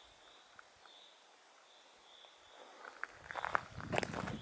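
Footsteps of a hiker walking on a forest path. They start about three seconds in and grow louder. Before them it is nearly quiet apart from a faint, repeated high chirping.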